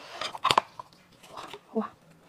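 Cooked lobster shell being cracked and pulled apart with gloved hands: a sharp crack about half a second in, then softer crinkling, and a short voiced sound near the end.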